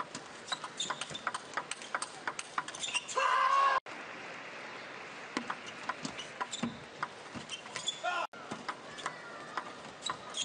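Plastic table tennis ball clicking off bats and the table in quick rallies, at uneven spacing. A short loud shout breaks in about three seconds in and again briefly near eight seconds.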